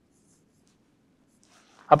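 Faint sound of a stylus writing on an interactive display board, with a man's voice starting right at the end.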